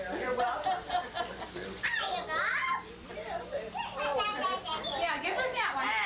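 Indistinct, overlapping chatter of several people, with high children's voices among them.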